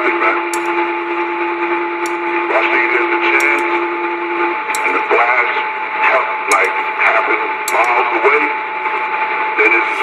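Two-way radio channel hissing with static, with faint garbled voices coming through. A steady low whistle sounds until about four and a half seconds in, and a higher steady tone runs under it, along with scattered faint clicks.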